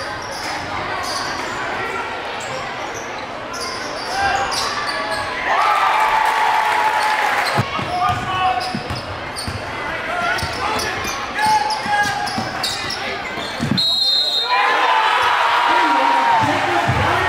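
Live basketball game sound in a gym: a ball dribbling on the hardwood floor, short squeaks and shouting voices from players and fans. Near the end a brief high whistle sounds, and the crowd noise rises as a basket goes in.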